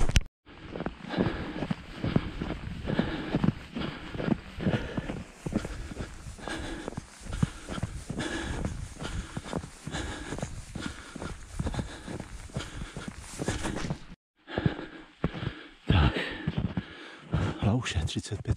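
A runner's footsteps on a snowy trail in a quick, steady rhythm, with his breathing. The sound drops out briefly about fourteen seconds in, then the footsteps carry on.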